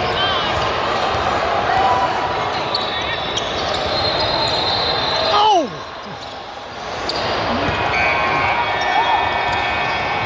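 Indoor basketball game: a ball dribbling on a hardwood court amid the voices of players and spectators, echoing in a large hall. The sound drops suddenly a little past halfway and builds back about a second later.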